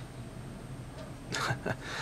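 Quiet room tone with a low steady hum, and a single short spoken word near the end.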